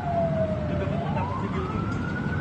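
An emergency vehicle siren wailing in a slow cycle: its pitch falls to a low point about a second in, then rises again. Under it runs a steady low rumble of traffic.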